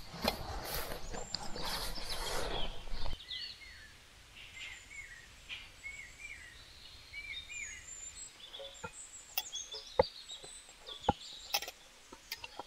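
Hands mixing flour dough in a steel bowl, a rough rustling for about three seconds, which cuts off suddenly. Then small birds chirp in many short calls over a quiet background, with a few sharp clicks near the end.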